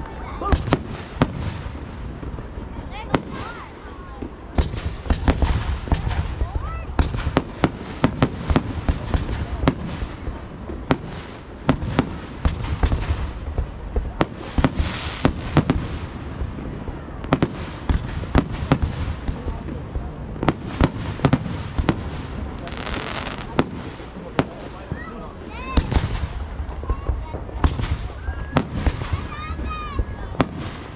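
Aerial fireworks shells launching and bursting in a public display: dozens of sharp bangs in quick succession, with longer hissing, crackling spells about halfway through and again about three-quarters of the way in.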